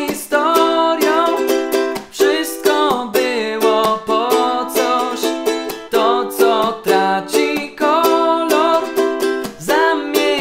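Korala ukulele strummed in a steady rhythm through a chord progression, with a man singing the melody over it.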